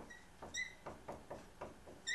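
Dry-erase marker writing on a whiteboard: a faint run of quick short strokes and taps, with a brief high squeak about half a second in.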